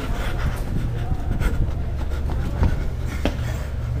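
Low rumble of handling noise from a handheld camera carried at a run, with a few sharp knocks.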